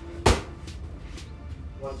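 A boxing glove landing one punch on a handheld focus mitt about a quarter second in: the right hand that closes a called jab-jab-two combination.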